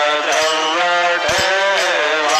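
Hindu devotional aarti hymn sung in a chant-like melody, with instrumental accompaniment and repeated percussive strikes.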